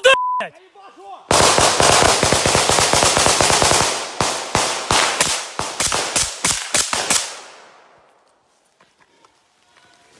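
Automatic rifle fire close by: a long, fast, continuous burst for about three seconds, then a string of separate shots at about four a second that stops about seven seconds in.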